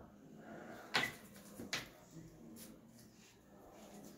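Two sharp clicks, about a second in and just before the middle, with a few lighter knocks as a swab specimen tube is handled and opened at a counter.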